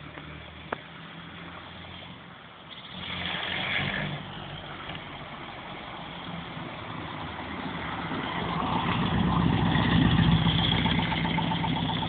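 The air-cooled VW 1600 flat-four of a Puma GTE running as the car drives up and past. It is faint at first, swells briefly about three seconds in, then grows steadily louder to a peak about ten seconds in as the car passes close by.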